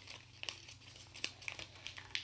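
Paper crinkling and rustling in a few short crackles as it is folded and creased by hand.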